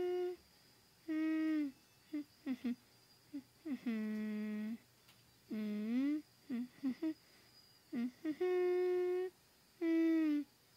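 A person humming in short phrases: held notes about a second long, some sliding down or up in pitch, with brief pauses and small vocal sounds between them.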